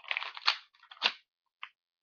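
Clear plastic spring airsoft pistol being cocked by hand: the slide drawn back with a short rattle that ends in a click, then a second sharp click about a second in and a faint tick near the end.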